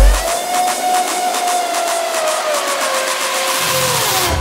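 Electronic dance track in a breakdown: the kick and bass drop out just after the start, leaving a held synth lead that slides slowly down in pitch over fast hi-hat ticks. The bass comes back in near the end.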